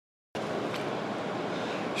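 A pen traced along a steel ruler over heavy-duty aluminium foil: a steady noise that starts suddenly about a third of a second in, with one faint click soon after.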